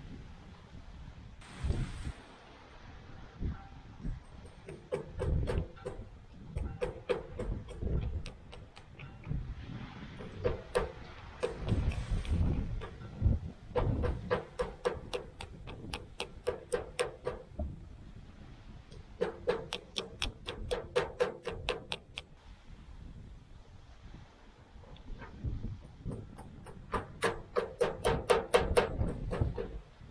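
Small hammer tapping on a steel hydraulic cylinder gland, driving new seals into their bore. The taps come in runs of a few seconds at about five a second, each with a short metallic ring, with handling noise between runs.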